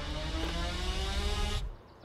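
Electric motor of a Mercedes Sprinter van's power side door running after a press of the key fob: a steady whine that rises slowly in pitch and stops abruptly near the end.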